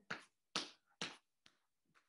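Footfalls of a person marching on the spot on a wooden floor: three soft, quick steps about half a second apart, then a couple of much fainter taps.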